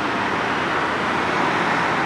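Steady noise of street traffic from passing cars.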